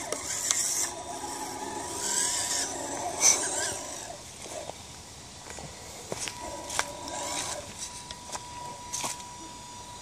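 Electric motor and gear drivetrain of a stock Losi Night Crawler RC rock crawler whirring in short bursts as it climbs over log rounds. A few sharp knocks come from the tyres and chassis striking the wood.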